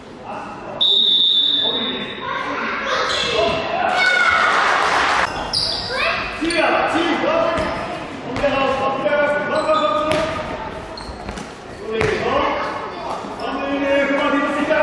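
A referee's whistle gives one blast of about a second, shortly after the start. Then a handball bounces on the sports-hall floor amid constant shouting from players and spectators, echoing in the large hall.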